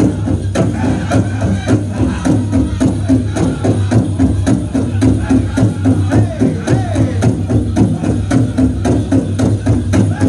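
Powwow drum group singing a chicken dance song, with a steady fast beat on the big drum under the singers' voices.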